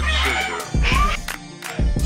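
Background hip hop music with a deep bass line and a gliding vocal line.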